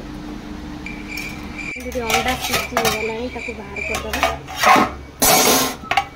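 Steel kitchen pots and utensils being handled: clinks and clatters, loudest in the last two seconds.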